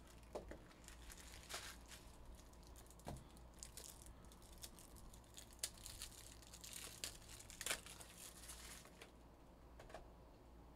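Faint, irregular crinkling and rustling of plastic packaging being handled, with scattered light clicks and taps.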